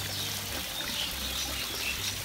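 Small waterfall splashing steadily into a fish pond.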